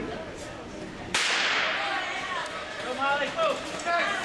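Starter's pistol fired once about a second in, a sharp crack that echoes on in the rink, starting a short-track speedskating race. Voices call out from the stands after it.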